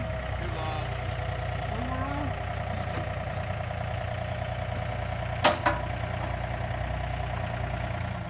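Yanmar mini excavator's diesel engine running steadily, holding a steel post up in its bucket. A single sharp knock about five and a half seconds in.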